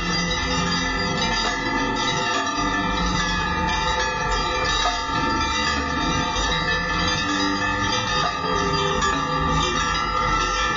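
Ritual bells of the Ganga Aarti ringing continuously, many overlapping ringing tones, with music underneath.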